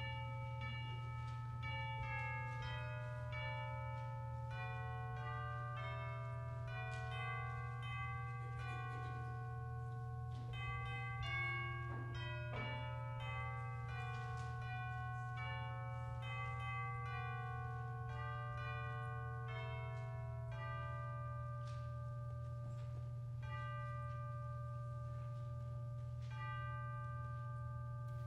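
Bell-like chimes playing a slow hymn-like melody, one struck note after another with each ringing on into the next, over a steady low hum.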